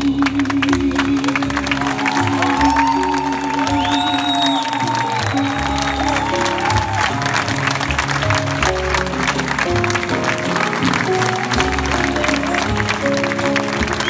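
A live jazz quartet of voice, piano, double bass and drums playing the close of a song. A long held note in the first four seconds or so gives way to short sung phrases and piano and bass lines, with audience applause mixed in.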